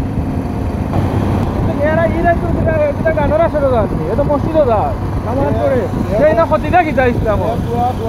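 A motorcycle running under way with a steady low engine and road rumble, and men's voices talking loudly over it for most of the time.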